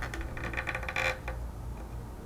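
Metal control-valve spool being pushed home through its air control block: a quick run of light metallic clicks and scrapes lasting about a second.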